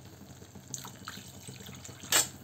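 Faint bubbling of a tomato-based curry gravy simmering in a steel kadhai, with a few small pops.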